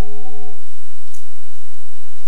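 A man's Buddhist chanting voice holding one long, steady low note, which ends about half a second in. Faint hiss and a brief soft click follow.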